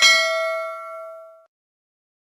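A notification-bell 'ding' sound effect sounds as the subscribe animation's bell is clicked. It is a single bright chime that rings and fades away over about a second and a half.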